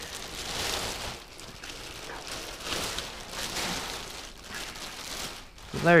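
Clear plastic bag rustling and crinkling as a motorcycle jacket is pulled out of it by hand.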